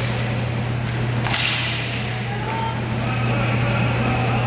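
A single sharp crack about a second in, typical of a hockey stick striking the puck or the puck hitting the boards during play, heard over a steady low hum.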